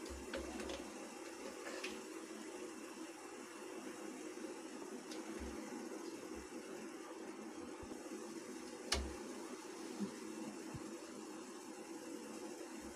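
Faint steady background hum, with a few light clicks of the stainless-steel idli mould plates being handled and stacked onto the stand, the clearest about nine seconds in.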